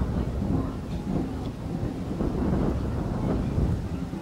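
Wind buffeting the microphone outdoors by the water, a low rumble that rises and falls.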